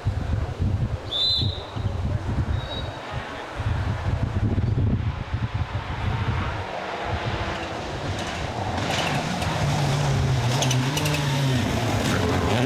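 Mitsubishi Lancer Evolution rally car approaching on a gravel stage, its engine growing steadily louder over the last few seconds, with sharp clicks near the end. Before that, wind buffets the microphone, with a short high chirp about a second in.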